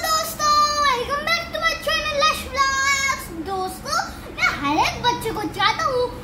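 A boy speaking in a high child's voice.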